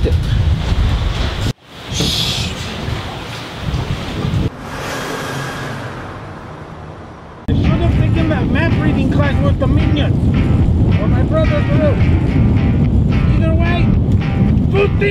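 Wind buffeting the microphone over a low rumble, cut off abruptly about a second and a half in. A quieter, fading stretch follows. About halfway through, loud wind noise and the rumble of a pontoon boat under way come in suddenly, with background music over them.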